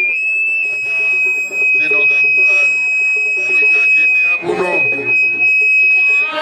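A steady, high-pitched whistle-like tone held for about six seconds, with a slight upward bend near the start, over a background of voices.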